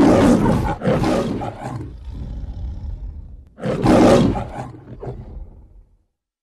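The MGM logo's lion roaring: one roar with a quick second surge, then a second roar about three and a half seconds later that fades away.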